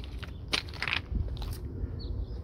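A few irregular crunching footsteps on mulch and river rock.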